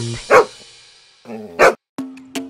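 Cartoon dog barking twice, two short barks about a second and a quarter apart, as the song's music fades out.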